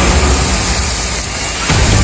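A mountain stream rushing over rocks at a small cascade, a steady loud hiss of water.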